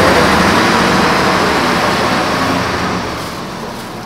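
A motor vehicle passing on the street, a loud rush of engine and road noise that fades steadily as it moves away.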